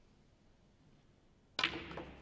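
Snooker cue ball struck and hitting the black ball: one sharp click about one and a half seconds in, ringing briefly.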